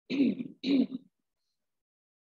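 A person clearing the throat twice in quick succession, two short vocal bursts within the first second.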